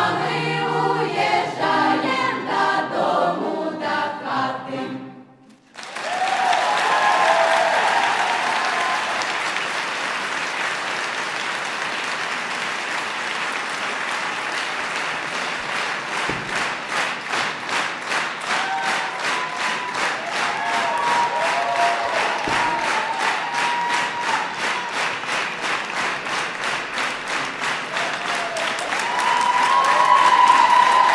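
Folk choir singing the last bars of a song, which ends about five seconds in. Audience applause then breaks out, with a few shouts, and about halfway through settles into rhythmic clapping in time.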